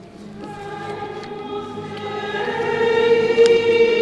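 Choir singing a slow hymn line in long held notes, growing steadily louder over the first three seconds.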